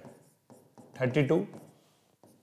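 Marker pen writing on a whiteboard: a run of short, faint strokes as an equation is written out, with a brief spoken phrase about halfway through.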